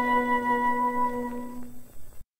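The closing held chord of a 1950s Mandarin pop song with orchestra, played from a 78 rpm shellac record, steadily fading away.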